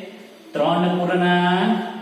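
A man's voice speaking in a drawn-out, sing-song way, starting about half a second in, as in reading a fraction aloud to a class.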